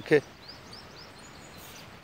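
Small birds chirping: a quick run of short, high chirps in the first second, over a steady outdoor background hiss.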